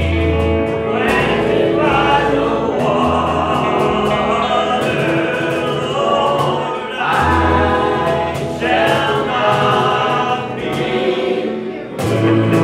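A church worship team of men's and women's voices singing together, accompanied by acoustic guitar and keyboard.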